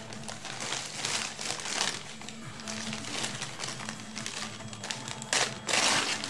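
Paper food packaging being handled, rustling and crinkling irregularly, with two louder crumples near the end.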